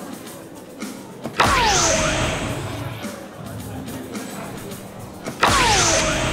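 Electronic soft-tip dartboard playing its bull-hit sound effect twice, about four seconds apart. Each effect is a sudden loud burst with a falling tone, set off by a dart landing with a light tap just before it.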